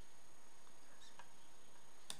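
A few faint light ticks about a second in, over a steady low hiss: a hand reaching toward the recording computer.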